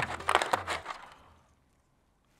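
Brief clicking and crackling from cheap plastic earphones and their packaging being handled, fading out about a second and a half in and then cutting to dead silence.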